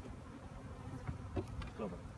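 Honeybees buzzing around an open hive, a steady low drone.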